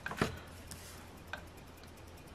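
A scratcher coin rubbing and tapping on a scratch-off lottery ticket: a few light clicks and scrapes, the sharpest just after the start.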